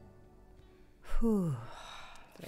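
The last faint notes of a song die away, then about a second in a person gives one loud voiced sigh that falls in pitch.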